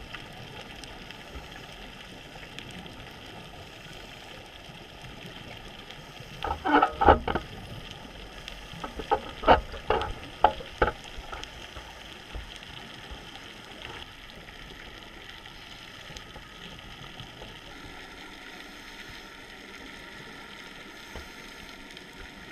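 Underwater recording: a steady hiss, broken twice by bursts of scuba regulator exhaust bubbles as a diver breathes out, first about six seconds in and again a few seconds later.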